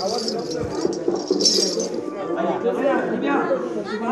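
Several people's voices overlapping, with a brief bright metallic jingle about a second and a half in.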